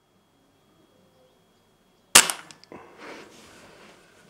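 Air rifle firing a single shot about two seconds in: one sharp crack followed by a short, fading tail of quieter noise.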